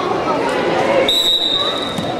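Voices of onlookers echoing in a gym, and about halfway through a steady, high-pitched whistle that holds one note for about a second.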